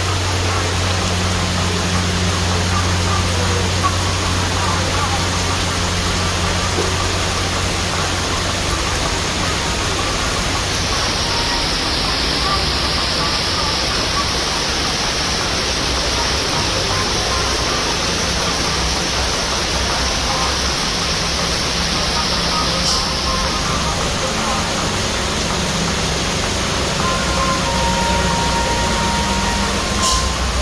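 Heavy tropical downpour making a loud, steady hiss, with the engines of trucks climbing the wet mountain road underneath; a low engine hum is strongest at the start.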